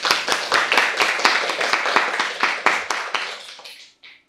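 Audience applauding: many hands clapping densely, thinning and fading out near the end.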